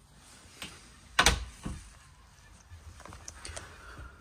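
A boat's toilet-compartment door being handled and shut: one sharp knock about a second in, with a fainter click before it and a few light clicks later.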